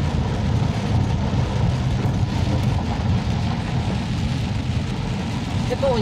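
Steady rumble of a car driving through water running across a flooded road, heard from inside the cabin, with the hiss of tyre spray and rain against the windshield.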